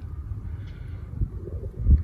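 Wind buffeting the microphone: a low rumble that surges near the end.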